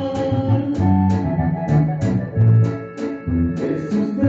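A live band's instrumental passage: electronic keyboards with an organ sound hold sustained chords over bass guitar notes and a regular drum beat.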